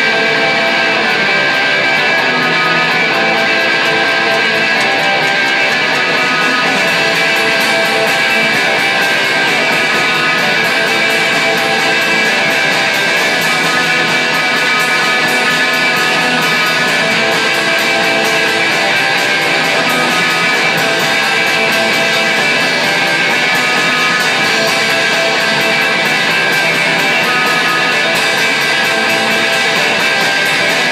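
Punk rock band playing a song, led by strummed electric guitar with bass, steady at full loudness throughout.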